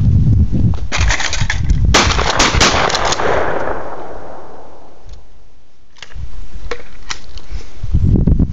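A quick string of gunshots: one about a second in, then several in rapid succession about two seconds in, followed by a long, slowly fading echo. Low rumble of wind on the microphone can be heard before and after.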